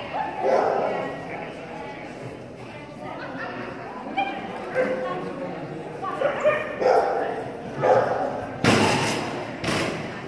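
A dog barking in short bursts amid voices, echoing in a large indoor hall, with two loud thuds near the end.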